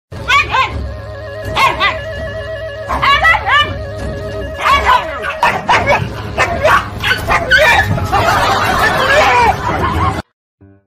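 A dog barking in short groups of calls about every second and a half, breaking into a dense flurry of overlapping calls over the last two seconds. Background music with steady held tones plays underneath.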